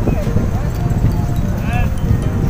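Faint voices of people over a steady low rumble, with a short high-pitched call near the end.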